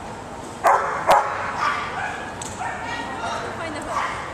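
Dog barking: two loud, sharp barks about half a second apart, a little under a second in.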